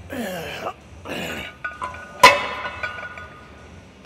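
Two short grunts with falling pitch, then a steel weight plate clanks onto the loading horn of a plate-loaded incline press machine about two seconds in. It is a single sharp metal-on-metal strike, the loudest sound here, followed by a ringing that fades within about a second.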